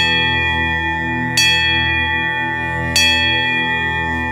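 Three bell strikes about a second and a half apart, each ringing on, over a steady musical drone.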